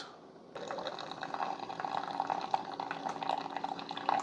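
Keurig K-Supreme Plus pod coffee maker brewing: coffee streams and splashes into a glass mug over a faint steady hum from the machine. It starts about half a second in, after a brief quiet.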